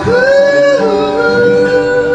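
A man singing one long held high note that slides down a little about a second in, with an acoustic guitar ringing underneath.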